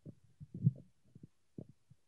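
Handling noise from a handheld microphone: a few dull thumps and knocks, the loudest about half a second in and another short one about a second later.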